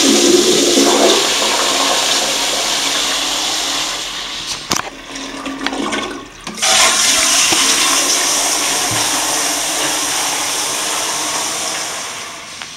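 Commercial toilet with a flushometer valve flushing: a loud rush of water into the bowl that eases off around four seconds in. After a sharp click, a second flush starts suddenly at about six and a half seconds and slowly fades.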